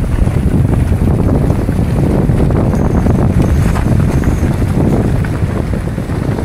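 Wind buffeting the microphone of a camera on a moving mountain bike, with a busy rattle of small clicks from the bike rolling over a leaf-covered dirt and gravel track.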